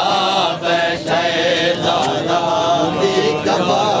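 A man reciting a noha, a Shia mourning lament, in a slow, drawn-out chanting voice, holding and bending long notes.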